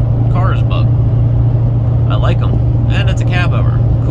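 Steady low drone of a car's road and engine noise heard from inside the cabin while driving on the highway, with a voice talking briefly three times over it.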